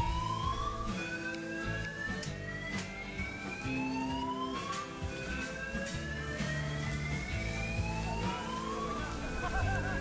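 A building fire alarm sounding its evacuation signal: a repeating whoop tone that rises slowly in pitch over a few seconds, then drops back and starts again. Background music plays under it.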